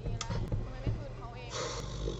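Quiet dialogue from a drama playing back through speakers, with a steady low hum underneath.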